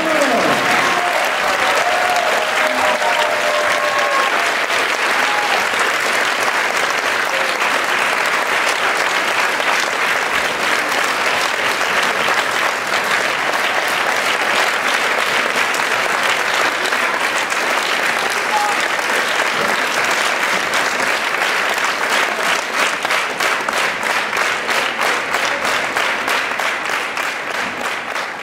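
Large audience applauding, a dense, sustained ovation that falls into rhythmic clapping in unison for the last several seconds.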